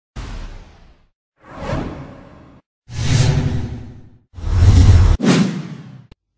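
Intro whoosh sound effects: five whooshes in a row, each swelling and fading, growing louder toward the end. The fourth cuts off sharply about five seconds in, just before the last one.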